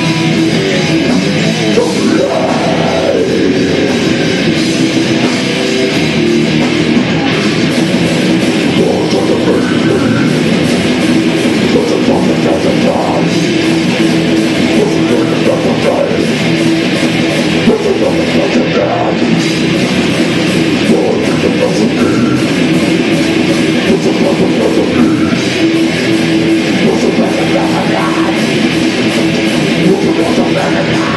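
Live heavy metal band playing at full volume: distorted electric guitar, five-string electric bass and drum kit together, steady and unbroken throughout.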